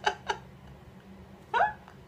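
A woman laughing: two short bursts at the start, then one higher rising-and-falling laugh sound about a second and a half in.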